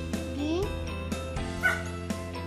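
A Pembroke Welsh corgi giving a short yip near the end, over background music with a steady beat.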